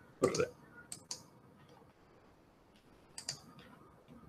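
A few sharp computer clicks: a pair about a second in and another pair just after three seconds. A brief vocal sound comes just before them at the start.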